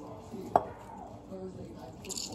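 A single sharp click about half a second in, with a short ring, as a handheld plastic citrus squeezer is pressed on a lime over a glass mixing bowl.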